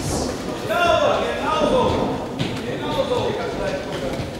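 Shouting from ringside during an amateur boxing bout, the voices echoing in a large sports hall over the background din of the crowd.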